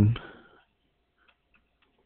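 A man's voice finishes a word, then near silence with a few faint ticks of a stylus tapping a drawing tablet as dots are written.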